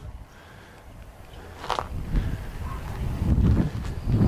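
Footsteps scuffing on gravelly ground, beginning about two seconds in after a quiet stretch and a single click.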